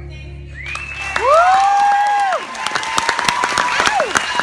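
The last notes of the music fade out, then an audience breaks into applause with whooping cheers; one loud 'woo' rises, holds for about a second and falls away, and the clapping goes on after it.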